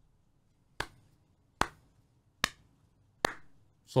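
A slow clap: four single hand claps, evenly spaced a little under a second apart.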